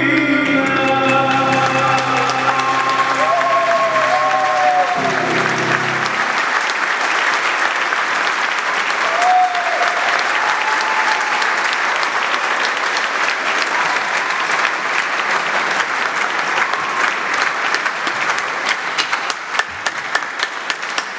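A church congregation applauding as a sung piece ends: the singer's last held, gliding notes and a steady low accompaniment chord stop about five to six seconds in, and the clapping carries on alone, thinning into separate claps near the end.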